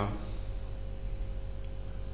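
Steady electrical hum with faint hiss, the recording's background noise; a drawn-out spoken "uh" fades out at the very start.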